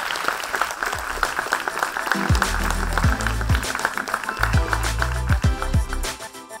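Audience applause, joined about two seconds in by electronic music with a heavy bass line and quick falling bass sweeps.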